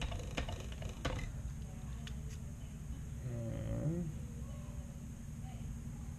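A few light clicks of soldering tools being handled on a workbench over a steady low hum, with a brief wordless hum from a man about three and a half seconds in, rising in pitch.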